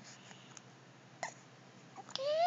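Mostly quiet room tone, with one short, sharp little sound from the baby a little past halfway and a fainter tick before it.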